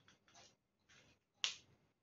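A quiet room with a few faint rustles and one sharp, short click about one and a half seconds in.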